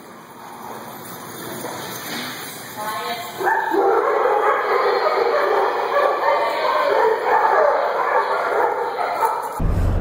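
A large pack of dogs barking together in a crowded room. It builds from faint to loud, swelling sharply about three and a half seconds in.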